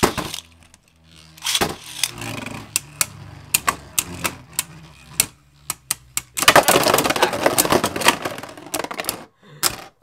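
Two Beyblade Burst spinning tops launched into a plastic stadium, whirring and knocking against each other and the stadium walls in sharp clacks. About six and a half seconds in comes a dense, violent burst of rapid collisions lasting a couple of seconds, and a click near the end as a top is handled.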